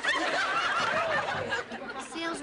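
Studio audience laughing, many voices at once, the laughter dying down near the end.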